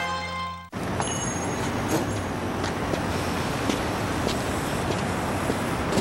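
Commercial jingle music that cuts off abruptly less than a second in. It gives way to a steady rush of road-traffic noise with scattered small clicks.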